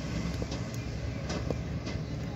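Wind rumbling on the microphone as a steady low noise, with a few faint clicks.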